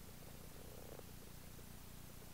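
Faint, steady low hum with a fine flutter: background room tone, with a soft tick about a second in.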